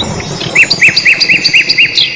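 A bird chirping a quick series of about six short repeated notes, roughly three a second, starting about half a second in.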